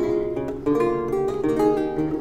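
Solo lute playing a gavotte: plucked chords and melody notes ring over held bass notes, with fresh plucks at the start, under a second in and again about halfway through.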